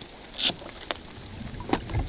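A few light clicks as the latches of a hard-shell rooftop tent are worked open by hand, with a brief hiss about half a second in and a low rumble rising near the end.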